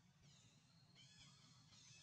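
Near silence with faint, high-pitched bird calls, short arching chirps repeating and growing a little stronger about halfway through, over a low steady hum.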